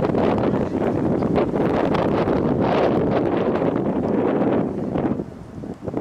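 Wind buffeting the camera's microphone in loud, gusting rumbles that ease off briefly near the end.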